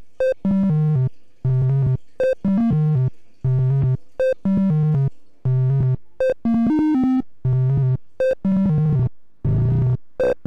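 SSI2131-based Eurorack VCO, its triangle output soft-synced to a second oscillator, playing a sequenced phrase of short notes, low notes alternating with higher blips, repeating about every two seconds. Near the end the tone turns rougher and the pitch bends as the patch is adjusted.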